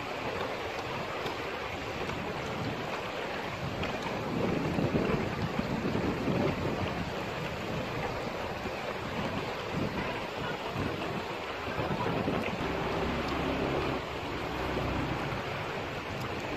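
River water rushing steadily over rocks, with wind buffeting the microphone; the wind swells briefly from about four seconds in.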